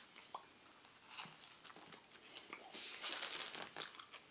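A person bites into a fried cod fillet sandwich and chews it, with faint scattered crunches and wet mouth clicks. A denser run of crunching comes near the end.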